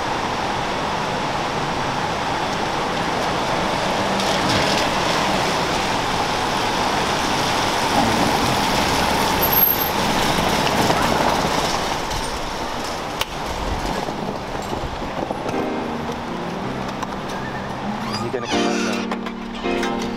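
Steady hiss of rain and tyres on a wet street as a taxi pulls up. About three-quarters of the way through, piano music comes in over it.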